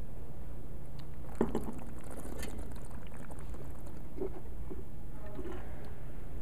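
A wine taster sipping red wine and working it around his mouth: a few faint slurps and mouth sounds over a steady low hum.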